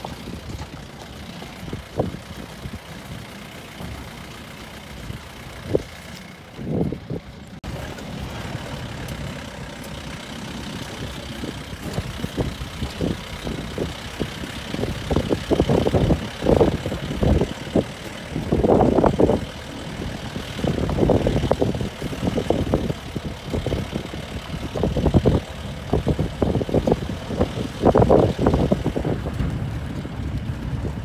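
Safari jeep driving along a rough dirt track: the engine runs steadily under irregular thumps and rattles from the vehicle jolting over the ground, which grow heavier and more frequent about halfway through.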